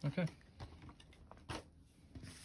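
A few faint, brief rustles and soft taps of foil-wrapped trading-card packs being handled on a wooden table, the clearest about a second and a half in.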